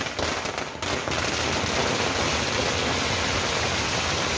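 A long string of firecrackers going off: a few separate cracks in the first second, then an unbroken rapid crackle.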